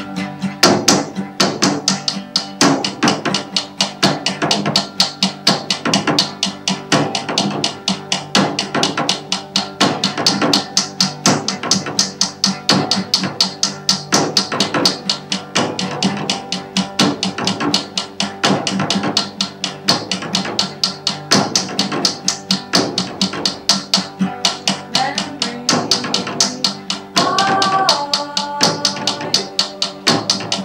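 Acoustic guitar strummed together with a small drum struck with sticks in a quick, steady rhythm.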